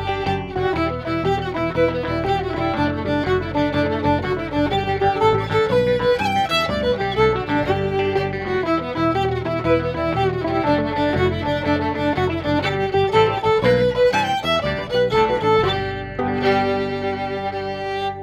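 Solo fiddle playing a lively English-style jig, a quick run of bowed notes, ending on a long held note about sixteen seconds in.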